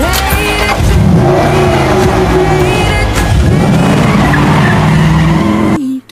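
Car engine revving with tyres squealing, under background music; it all cuts off abruptly near the end.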